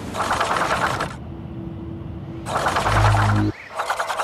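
TV transition sound effect leading into an animated eye ident: two bursts of rapid, rattling hiss, the second joined by a deep bass hum that cuts off suddenly near the end.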